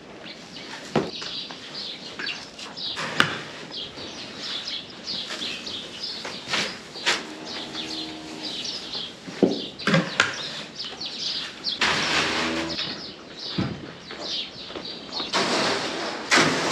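Small birds chirping over and over in a cattle barn, with scattered knocks from the pens and bunks. A cow moos briefly about halfway through, and about three-quarters of the way through there is a loud burst of scraping as grain feed is shoveled out into the bunk.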